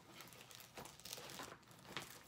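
Faint crinkling and rustling as a cross-stitch work in progress is handled, with many small uneven crackles.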